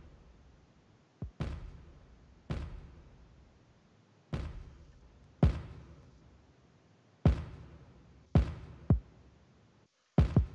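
Soloed kick drum track played back from a mix session with its processing bypassed: about eight irregularly spaced kick hits, each a sharp thump whose low pitch falls as it decays slowly.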